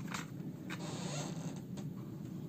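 Pen scratching on paper on a clipboard, with a few light clicks as a pen is picked up and handled, over a low steady hum.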